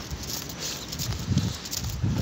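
Footsteps on wet pavement with handheld phone noise, one heavier, dull step about a second and a half in.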